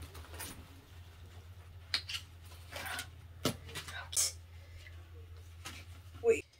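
A black belt bag being handled: a few sharp clicks and rustles from its strap, buckle and plastic mailer over a low steady hum.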